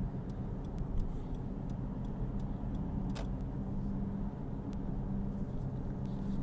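Steady road and engine noise inside a moving car's cabin: a low hum, with faint light ticks and one brief click about three seconds in.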